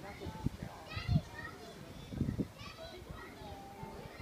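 Distant high-pitched voices chattering in short bursts, about a second in and again near three seconds, with low bumps of wind or handling on the microphone.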